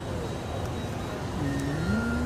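Supermarket room noise: a steady low rumble and hiss, with a sustained pitched tone coming in about a second and a half in.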